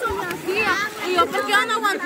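Children's and adults' voices calling out and shouting over one another while playing, with high-pitched rising and falling calls; no clear words.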